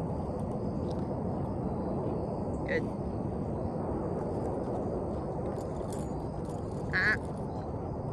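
Steady outdoor background noise with a faint, steady high whine, broken by two short, high-pitched calls: one about three seconds in, and a slightly louder one about a second before the end.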